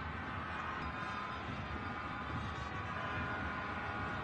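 Steady crowd noise in a football stadium during match play, an even background hubbub with faint held tones above it.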